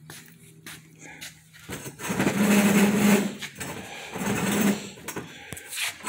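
Metal table legs dragged across a concrete floor, grinding and scraping in a few separate pushes starting about two seconds in, with a quiet stretch before.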